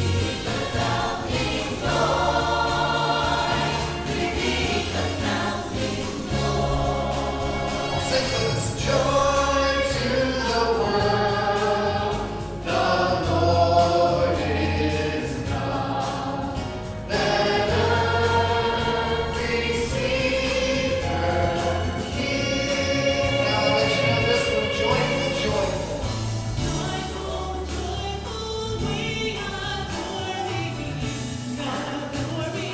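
Church choir singing a Christmas song with live band accompaniment: piano, drums and steady bass notes under the voices.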